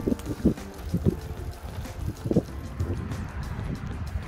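Wind on the microphone and a low, steady rumble from a recumbent bicycle rolling along a paved cycle path, with short pitched sounds recurring irregularly, about every half second.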